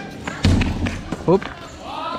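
A basketball bouncing on a paved court, with one heavy thud about half a second in, and a short shout from a voice a little later.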